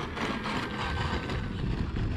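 Electric motor and propeller of an E-flite Carbon Z Cessna 150T RC plane running at low throttle as it rolls along an asphalt runway. Its thin whine sinks slightly in pitch and fades after about a second and a half, over a steady rushing noise.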